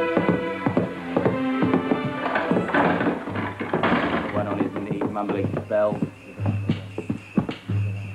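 Film score music with held chords, joined from about two and a half seconds in by a run of sharp knocks and a low hum that comes and goes.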